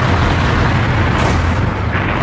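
Loud, steady low rumble with a layer of hiss over it: a battle sound-effect bed of distant gunfire and engines.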